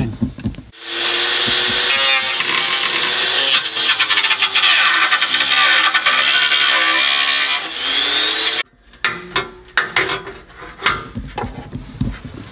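Hand-held power tool with a cutting wheel grinding into sheet-steel floor panel, its motor pitch wavering as the load changes. It cuts off suddenly about nine seconds in, followed by scattered clicks and knocks.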